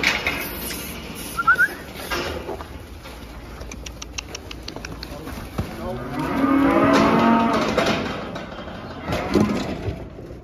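One of the cattle mooing: a single long, low call of about two and a half seconds, a little past halfway, with a few faint clicks before it.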